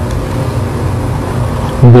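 A steady low hum with an even haze of hiss: the recording's constant background noise, heard in a pause between words.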